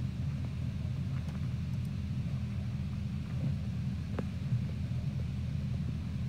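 A steady low rumble, even in level, with a faint tick about four seconds in.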